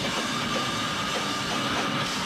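Grindcore band playing live: heavily distorted electric guitar and bass over drums, a dense, continuous wall of sound with a steady high tone held through most of it.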